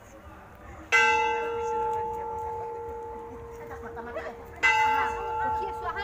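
A metal temple bell struck twice, about four seconds apart. Each strike rings on with a clear, steady tone that fades slowly.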